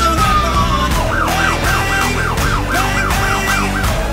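An emergency vehicle's electronic siren: a long wail falling in pitch, switching about a second in to a fast yelp of about four sweeps a second. It plays over background music with a steady beat.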